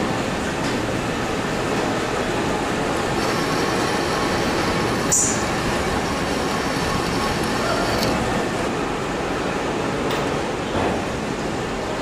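Metal lathe running steadily as a single-point tool cuts threads into a spinning steel shaft, a continuous mechanical din with a faint high cutting tone in the middle. A sharp clink about five seconds in.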